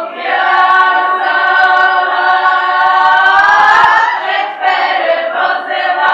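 Women's folk choir singing a Ukrainian folk song unaccompanied, in harmony. A long held chord slides upward about three to four seconds in, then breaks into shorter sung syllables.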